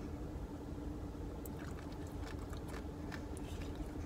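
A person chewing a mouthful of acai bowl with granola, faint small crunching clicks from about a second and a half in, over a steady low hum inside a car.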